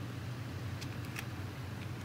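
A steady low hum, with two or three faint light clicks about a second in from a Glock 17 pistol being handled.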